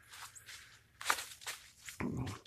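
Faint footsteps crunching on dry leaves and brush: about five soft, uneven steps.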